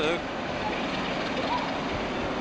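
Class 47 diesel locomotive running slowly as it pulls out of a tunnel into the station, heard as a steady, even noise with no distinct knocks or horn.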